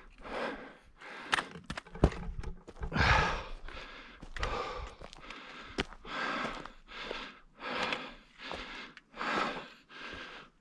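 Heavy breathing of a hiker climbing a steep slope, a hard breath about once a second, with a few footsteps crunching on loose rock.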